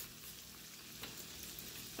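French green beans frying in hot bacon grease in a skillet, a faint steady sizzle that is still spitting a little.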